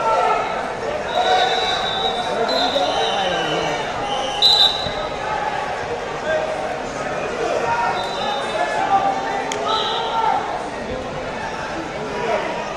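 Busy wrestling-tournament hall: many voices shouting and talking across a large, echoing room, cut by several short, high whistle blasts from referees and an occasional thud.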